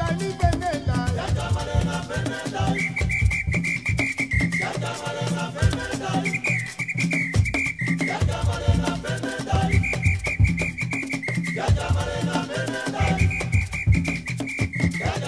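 Surinamese kawina band recording: dense rhythmic percussion with shakers under a melodic line. A high, held melodic phrase comes in four times, roughly every three and a half seconds, alternating with a busier mid-range part.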